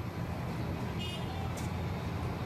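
Steady low engine rumble of dockside machinery, with a brief high-pitched tone about a second in and a short click soon after.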